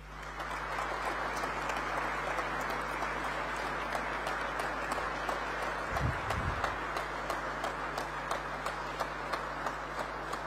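Audience applauding, many hands clapping steadily. The applause starts abruptly at the opening and keeps an even level throughout.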